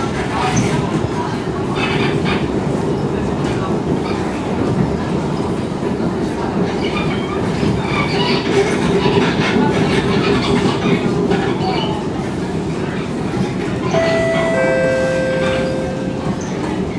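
Cabin running noise of an SMRT C151 metro train in motion: a steady rumble of wheels on rail. Near the end a steady whine comes in and then steps down to a lower pitch.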